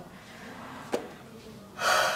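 A young woman yawning: a loud, breathy indrawn yawn begins near the end, after a faint single click about a second in.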